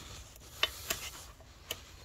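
A few light, irregular metallic clicks, about four, from the thrust bearing of a Hydro-Gear ZT-2800 hydrostatic transmission, its steel balls and washer clinking as it is lifted and handled by hand.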